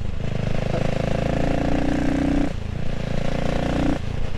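A 600 cc single-cylinder engine of a CCM Spitfire Six motorcycle pulling under way through twin exhausts with the baffles still in. The engine note breaks briefly twice, at the start and about two and a half seconds in, as the bike picks up speed.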